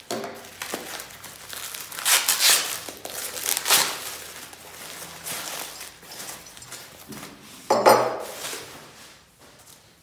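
Plastic shrink wrap and packing sheet being torn and crumpled by hand as a metal pipe coupling is unwrapped, in irregular crinkling bursts. The loudest event is a sudden louder burst about three-quarters of the way through.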